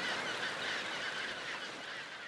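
A chinstrap penguin colony: many penguins calling over one another at once in a dense, steady chorus.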